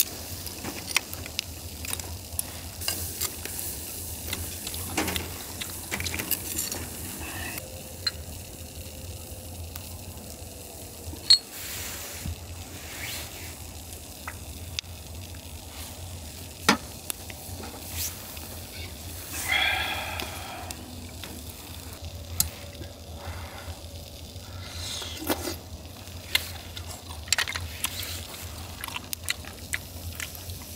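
Clams and scallops sizzling in their shells on a wire grill over charcoal, with frequent sharp clicks of steel tongs, chopsticks and shells knocking on the grate and on one another.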